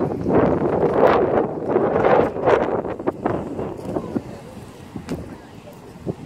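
Gusty sea wind buffeting the microphone, loudest in the first half and easing off toward the end.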